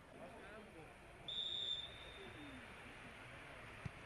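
Referee's whistle: one short blast about a second in, signalling that the free kick may be taken, over distant voices of players and spectators. A single dull thump near the end.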